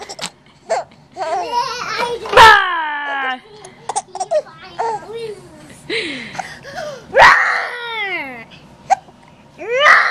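Infant laughing and squealing in bursts, with two loud high calls that fall in pitch, about two and a half and seven seconds in.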